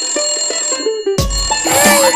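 Electronic ringing tune of a toy telephone: short repeated notes that stop about a second in. After a brief gap, louder music with a run of rising sliding notes begins.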